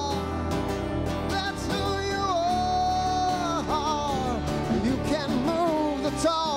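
Contemporary worship song: a singer's melody over instrumental accompaniment with a steady low bass, including one long wavering held note in the middle.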